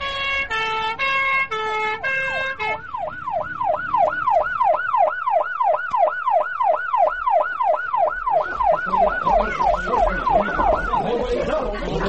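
Emergency vehicle siren: a two-tone high-low siren that switches a little under three seconds in to a fast rising-and-falling wail, about three sweeps a second, dying away near the end.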